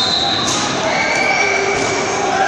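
Dodgeball players shouting and calling to each other in a gym. A thrown rubber dodgeball smacks once about half a second in.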